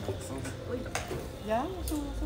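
Voices talking in the background, with one sharp click about a second in.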